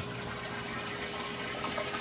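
Water from the circulation system's return pipe jetting into the full ice barrel: a steady splashing and pouring.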